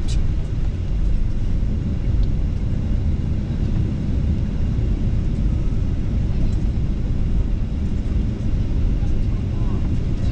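Steady low rumble of jet airliner cabin noise.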